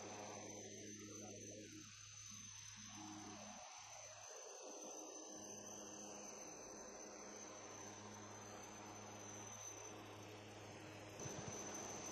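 Near silence: a faint steady hum with a thin high-pitched whine. No helicopter rotor is heard.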